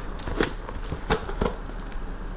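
Tape-wrapped cardboard parcel being cut with a knife and torn open: three short, sharp crackles of tape and cardboard giving way.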